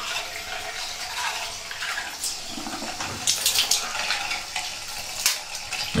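Water running from a tap as a steady hiss, with a few short knocks about two, three and a half and five seconds in.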